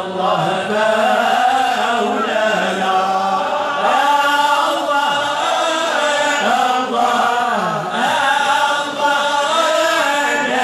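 A large group of men chanting Moroccan religious praise songs (amdah) together, voices only, in one continuous sung line with drawn-out, sliding notes.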